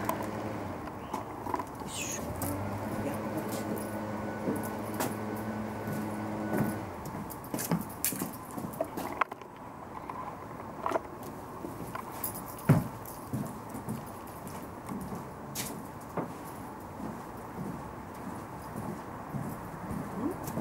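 A machine running with a steady hum of several even tones, which stops about seven seconds in. After that, scattered clicks and knocks.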